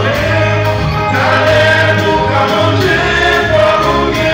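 A vocal group singing a gospel hymn in harmony, with a steady low bass line underneath, heard live in the hall.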